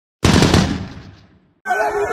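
A loud intro sound effect over a black screen: a sudden burst of rapid cracks that dies away over about a second. Crowd voices and chatter cut in near the end.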